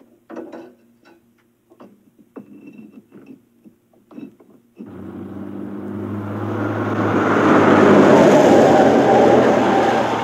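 Crinkling of a paper bag and small knocks against brick as it is pushed into a fireplace. About five seconds in, a car's engine and tyres come in, swell to their loudest a few seconds later and begin to fade as it passes.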